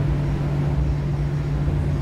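Steady low background hum with a deeper rumble beneath it, about as loud as the speech around it.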